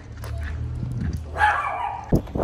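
Steady low rumble of street traffic, with one short dog bark about one and a half seconds in.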